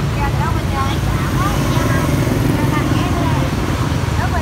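Background chatter of several people talking at a distance over a steady low rumble.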